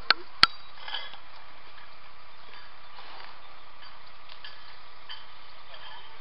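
Two sharp metallic knocks about a third of a second apart, a hammer striking steel scaffolding parts, followed by a fainter clink about a second in and light scattered clinks of metal.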